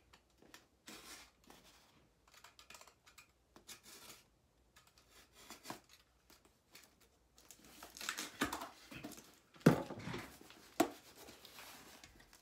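A box cutter slitting the tape on a cardboard shipping box, then the cardboard flaps pulled open. The cutting is faint and scratchy; the handling grows louder in the second half, with two sharp clicks.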